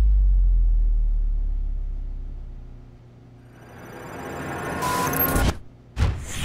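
Cinematic intro sound effects from a music video: a deep boom that fades away over about three seconds, then a rising rush that swells and cuts off suddenly half a second before the end.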